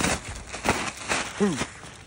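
Thin plastic bag around a compressed fibreglass insulation bundle rustling and crinkling in a few quick sweeps as it is pulled up and off the batts. A brief vocal sound from the man comes about one and a half seconds in.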